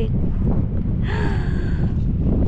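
Wind buffeting the camera microphone: a loud, steady low rumble. A brief brighter hiss joins it about halfway through.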